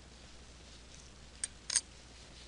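Two short clicks from dissecting instruments working on a perch specimen, about a second and a half in, the second one louder.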